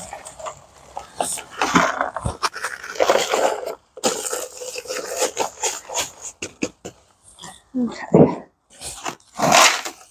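Dry concrete mix being tipped and scraped out of its paper bag into a plastic bucket, then the paper bag crackling and rustling as it is folded shut, followed by a few separate knocks and scuffs.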